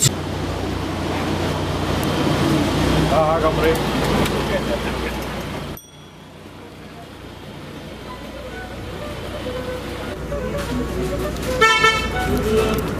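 Running and wind noise inside an open-sided sightseeing shuttle, cutting off sharply about halfway to quieter street sound that slowly grows. Near the end a short vehicle-horn toot sounds.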